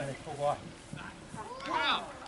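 Footballers' voices: shouted calls across the pitch, one about half a second in and a longer one near the end.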